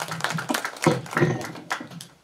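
Handheld microphone being handled and passed from one person to another: irregular taps, knocks and rubbing on the mic body.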